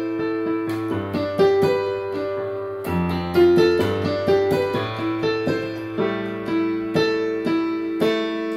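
Yamaha PSR arranger keyboard played with both hands: sustained low left-hand chords that change about one, three and six seconds in, under a right-hand line of single notes.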